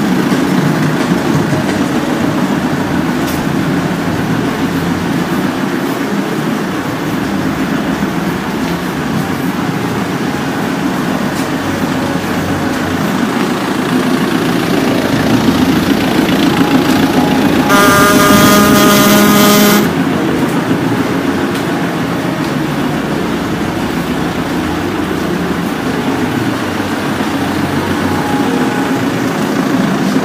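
Opel Vectra's engine idling steadily in an enclosed garage. A car horn sounds once for about two seconds past the middle.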